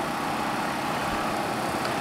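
Steady outdoor background noise with a low mechanical hum, even in level throughout.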